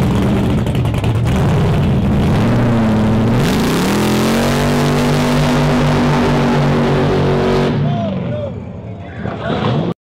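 Supercharged muscle car engine revving hard, then held at full throttle as the car launches with its rear tyres spinning and smoking. The pitch jumps up about three and a half seconds in, holds high, and fades near the end as the car pulls away down the road.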